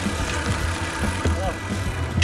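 Fat-tyre mountain bike rolling down a dirt trail: a low tyre rumble with small rattles and clicks from the bike, and wind buffeting the bike-mounted microphone. Faint voices of the other riders are heard under it.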